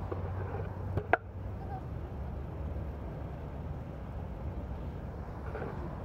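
Outdoor city street ambience: a steady low rumble of road traffic with faint distant voices, and one sharp click about a second in.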